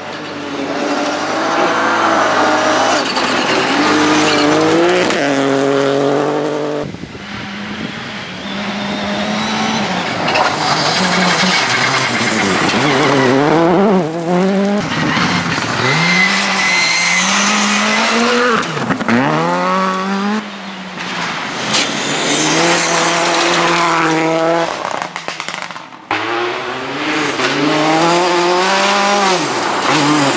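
Rally cars at full throttle on a gravel stage, one after another: engines revving high and dropping sharply with each gear change and lift. The sound cuts abruptly between passes several times.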